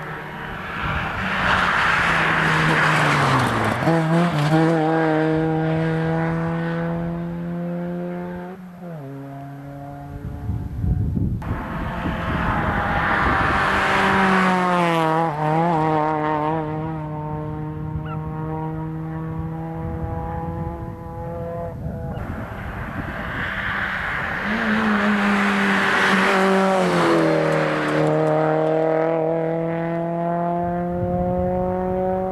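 Three rally cars pass one after another at speed. Each engine note climbs as the car approaches and steps down and up through hard gear changes before fading.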